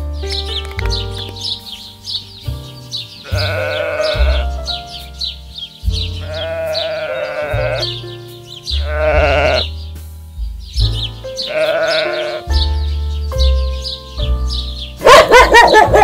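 A young farm animal bleating in four separate wavering calls about a second each, over background music with a steady beat. A louder animal cry comes near the end.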